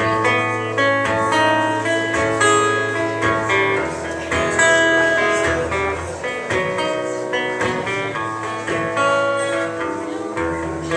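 Solo acoustic guitar playing an instrumental passage of plucked notes and chords, with no singing.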